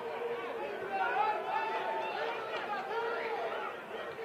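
Continuous talking, more than one voice overlapping like chatter, with no other sound standing out.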